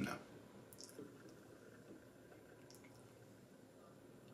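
Hookah water base bubbling faintly as smoke is drawn through the hose in one long pull.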